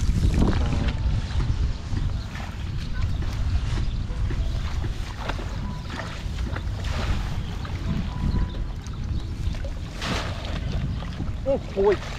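Wind buffeting the microphone in a steady low rumble, with a few brief swishes from wading through flooded grass and shallow water.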